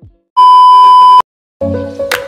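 A single loud electronic beep: one steady pure tone, just under a second long, that cuts off abruptly. Background music fades out just before it and comes back with a drum beat near the end.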